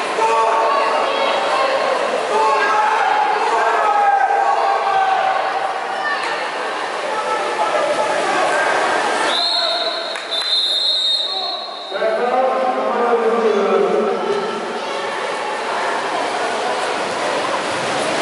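Players and coaches shouting to each other across an echoing indoor pool hall during a water polo game, with a referee's whistle held for about two and a half seconds near the middle; the shouting picks up again right after the whistle.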